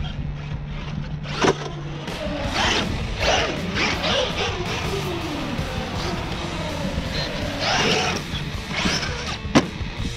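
Background music over the electric motor of a Traxxas Maxx RC monster truck, revving in several bursts with its pitch sweeping up and down. Two sharp knocks come through, one about a second and a half in and one near the end.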